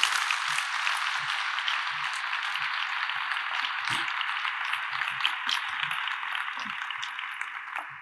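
Audience applauding steadily, the clapping fading away near the end.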